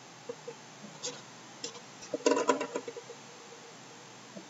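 Quiet handling of a mandolin being turned over in the hands: a few faint clicks and knocks, with a short cluster of ticks and a soft pitched sound a little past two seconds in.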